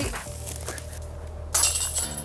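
A disc golf disc striking the metal chains of a basket about one and a half seconds in, the chains jangling and ringing on.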